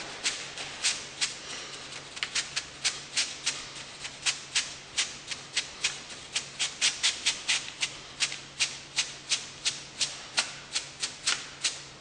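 Dry, sharp rattling strokes repeated about three times a second in a loose, uneven rhythm, like a shaker being played.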